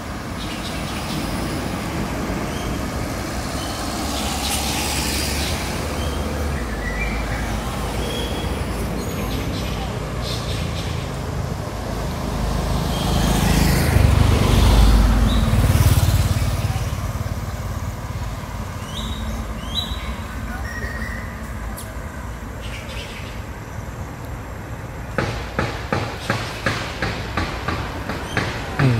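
A road vehicle passing by, its rumble swelling to the loudest point about halfway through and then fading, over steady outdoor background noise with a few short high chirps.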